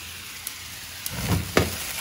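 Shrimp sizzling in a pan of ouzo, a couple of sharp clicks from a long-reach lighter, then about a second in the ouzo catches with a sudden low rush of flame: a flambé igniting.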